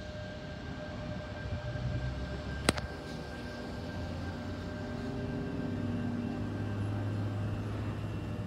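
Sydney Trains Tangara electric train, set T50, running into the platform, with a steady electrical whine over a low rumble that grows louder as the carriages draw alongside. One sharp click sounds about three seconds in.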